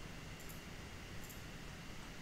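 Faint steady background hiss of a small room: room tone in a pause between speech, with no distinct sound events.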